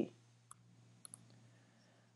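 A few faint computer mouse clicks, one about half a second in and a quick pair about a second in, over a low steady hum.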